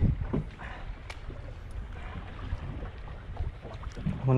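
Wind buffeting the microphone aboard a boat at sea, a steady low rumble, with a single faint click about a second in.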